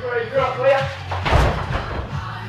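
A small hatchback dropped back down from its side onto its wheels, landing with one heavy thud about a second and a half in, preceded by men's voices.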